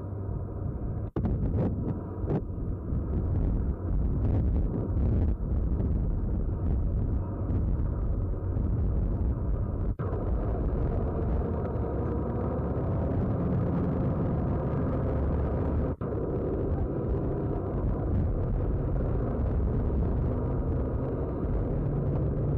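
Military trucks driving over desert sand: a steady low engine rumble with noise, broken by brief dropouts about a second in, at about ten seconds and at about sixteen seconds.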